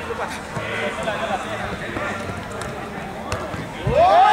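Players' voices calling out across a small-sided football pitch, with a few sharp knocks of the ball being kicked, the last one near the end as a shot goes in on goal.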